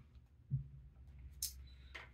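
Tarot cards being handled in a quiet room, with one sharp card snap about one and a half seconds in and a brief low sound about half a second in, over a steady low hum.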